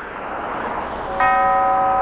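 A swelling whoosh, then about a second in a bell-like tone with several pitches sets in suddenly and holds steady: an edited-in sound effect.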